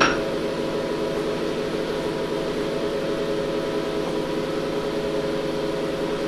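Cooling fans and power supply of a ZVS induction heater rig running at idle, a steady hum made of several steady tones. A light click right at the start.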